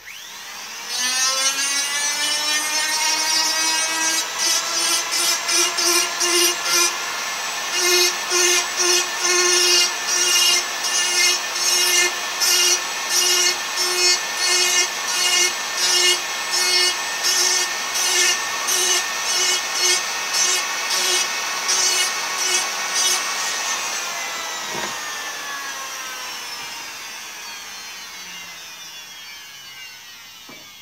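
Electric drill motor spinning up and boring into an ash walking-stick shank, its note pulsing in a regular rhythm, faster than once a second, as the bit bites and eases off. Near the end it winds down slowly with a falling pitch.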